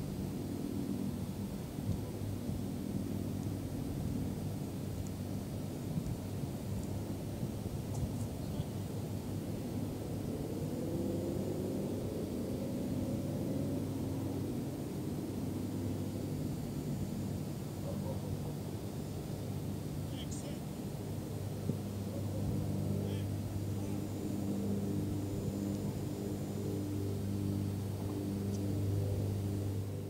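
Distant engine drone: a low, steady hum, with a higher tone sweeping up and then back down about ten to fourteen seconds in.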